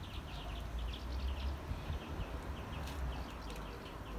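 Small birds chirping, many short high chirps a second, over a low steady rumble.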